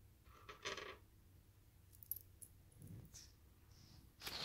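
Small metal charms clinking as they are set down on a tray: a short jingle about half a second in, then a few light ticks around two seconds in and a soft knock near three seconds.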